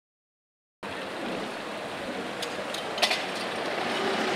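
Outdoor street ambience: a steady wash of noise that comes in abruptly about a second in, with a few short sharp knocks around the three-second mark, the loudest just after three seconds.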